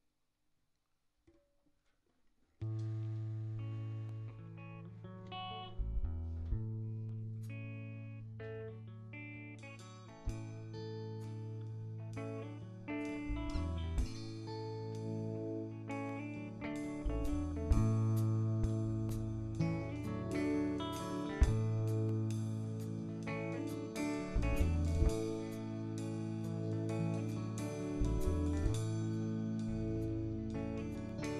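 Live band starting the slow, unfolding opening of a song after a couple of seconds of silence: picked electric guitar notes over long held low bass and keyboard notes. From about ten seconds in, the playing fills out and grows brighter as more of the band comes in.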